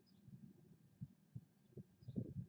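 Near silence: faint low rumbling with a few soft thumps in the second half, and a brief, faint high chirp at the start.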